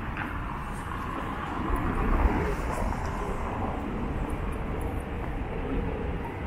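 City street ambience: a steady low rumble of traffic noise that swells briefly about two seconds in.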